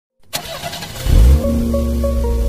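A car engine sound revving up hard, used as an intro effect, then music coming in about a second and a half in with a steady bass drone and a stepping melody.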